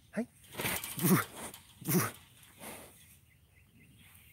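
Tiger chuffing at close range: three short, breathy, snort-like puffs in the first two seconds, a friendly greeting call.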